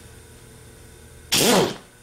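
Chicago Pneumatic half-inch air impact wrench fired in one short burst of about half a second near the end, spinning the alternator's pulley nut loose: a hiss of air with a motor pitch that rises and falls.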